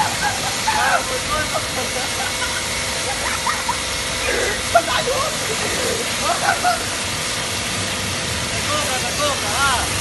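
High-pressure washer jet spraying steadily onto a person's body: a constant hiss of water.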